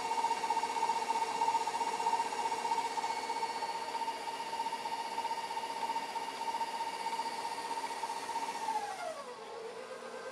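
KitchenAid bowl-lift stand mixer running with a steady whir, creaming butter and sugar in its steel bowl. About nine seconds in, the pitch slides down and settles lower as the mixer speed is turned down.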